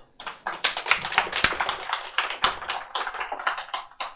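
Audience applauding: a run of many hand claps that starts just after the beginning and dies away just before the end.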